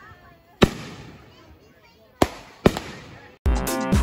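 Three firework bangs, each with a decaying tail. The first comes about half a second in, and two more follow close together a little after two seconds. Music with a steady beat cuts in suddenly near the end.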